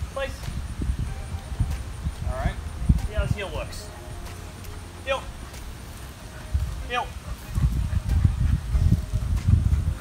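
Footsteps of a man and a large dog on a concrete sidewalk, with irregular low thumps heaviest in the second half. A short spoken command comes every second or two.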